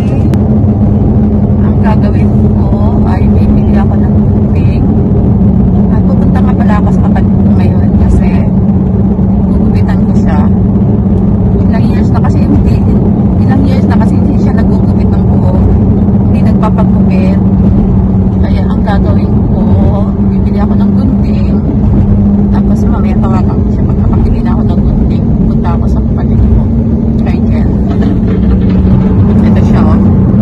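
Steady low drone of a car heard from inside the cabin, with a constant hum throughout.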